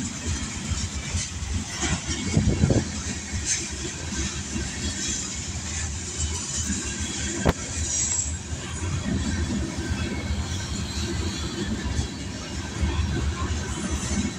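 Kansas City Southern covered hopper cars rolling past, a steady rumble with the wheels clattering on the rails. A single sharp knock sounds about halfway through.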